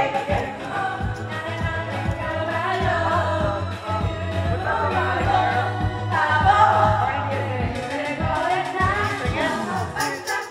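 Karaoke singing: a woman sings into a microphone over an amplified pop backing track with a steady beat, with other voices singing along.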